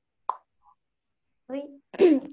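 A single short pop about a third of a second in, heard over video-call audio that is otherwise gated to silence. Near the end, a voice says 'Oi'.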